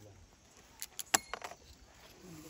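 A quick run of about five sharp metallic clicks and clinks about a second in, the loudest with a brief ring, as a small metal tool is handled.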